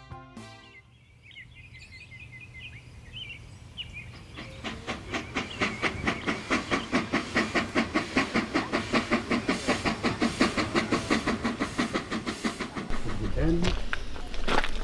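Steam locomotive approaching and chuffing, with a steady rhythm of about four exhaust beats a second that grows louder from about four seconds in. A heavier low rumble joins near the end.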